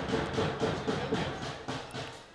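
Faint background ambience from a football match broadcast, a steady noisy hum with a few light ticks, fading near the end.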